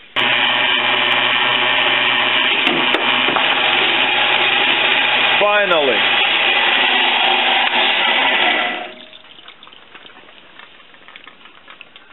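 Optimum horizontal metal-cutting bandsaw running while parting off solid aluminium stock, a steady motor and blade-drive hum with a short downward-sliding squeal about halfway through. The machine stops about nine seconds in.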